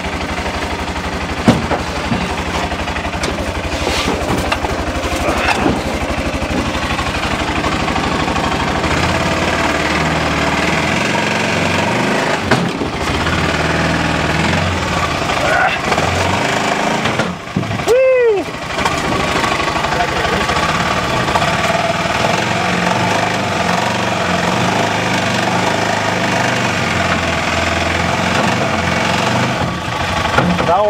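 Arctic Cat Prowler 700 XTX utility vehicle's single-cylinder engine idling steadily while a heavy axle is lowered from a chain hoist, with a few sharp metal knocks in the first seconds.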